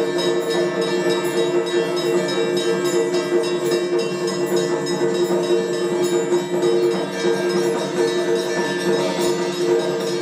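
Bells ringing continuously over music with two steady held tones, during an aarti: the waving of a lit lamp before a shrine.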